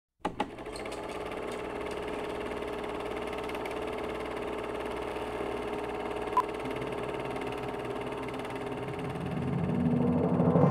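A steady mechanical whirr that starts with two sharp clicks, with one short high beep about six seconds in. Near the end a swell begins to build.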